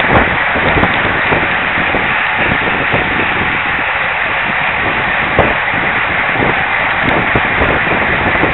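Steady wind noise on the microphone mixed with tyre and road noise from a road bicycle riding at race speed in a group.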